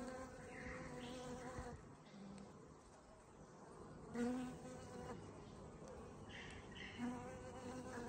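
Honeybees buzzing around open hives: a faint, steady hum of several overlapping, wavering pitches that dips quieter for a second or so before the middle.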